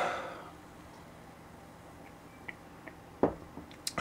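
A sip of beer from a pint glass: a soft airy intake that fades within half a second. Then a few faint ticks and a short knock about three seconds in, as the glass is set back down on the wooden bar top.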